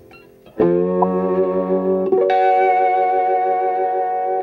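McKinney lap steel with a string-through pickup, played through a 1953 Fender Deluxe tube amp: two sustained chords in open E tuning. The first starts about half a second in; the second, higher and brighter, comes about two seconds in and rings on.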